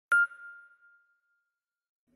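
A single bright ding from an intro logo sound effect: one sharp strike right at the start, a clear chime tone that rings and fades away over about a second and a half.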